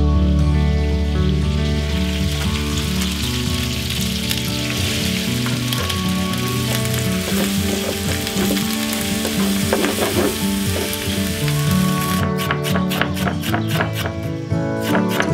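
Chopped onion sizzling as it fries in the hot fat of a large shallow kotlovina pan over a wood fire, stirred with a spatula, with background music playing.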